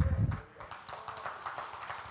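A man's voice finishes a word, and about half a second in a congregation starts clapping: many hands applauding in a thick, irregular patter.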